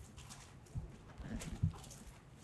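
Handling noise from a book being leafed through at a lectern: faint paper rustling with a few soft knocks, the loudest about one and a half seconds in.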